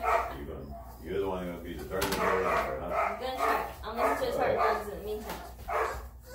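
Three-week-old Rhodesian Ridgeback puppy crying and yelping while being held, a run of pitched cries one after another.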